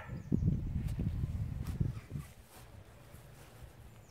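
Low rumbling handling noise from a handheld camera being moved, with a few soft knocks, dying down after about two seconds to a faint steady rumble.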